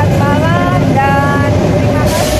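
A woman's voice talking over the steady low rumble and hum of a train station platform beside a standing train.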